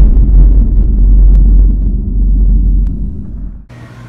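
Deep, loud rumble from the logo intro's sound effect, fading away over about three seconds and cutting off abruptly just before the end, after which a quieter steady hum remains.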